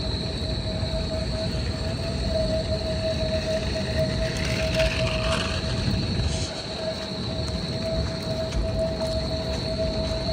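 Outdoor city-square ambience with traffic rumble and a tram line nearby. One steady whining tone holds throughout, and a brief swell of hiss comes about halfway.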